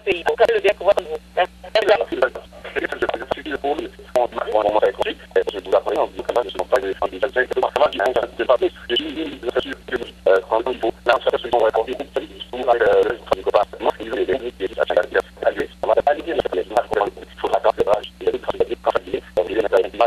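Speech only: a voice over a telephone line, cut off above the speech range, with a steady low hum underneath.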